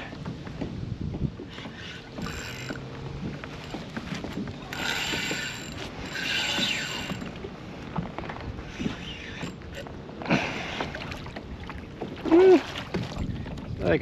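Spinning fishing reel being wound in several short bursts as a small striped bass is played in on the line.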